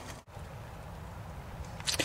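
Steady, faint hiss of rain falling, with no distinct tool or mechanical sound; it drops out briefly about a quarter second in.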